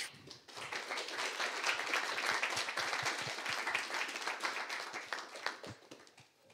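Audience applauding at the end of a talk, building up within the first second and dying away near the end.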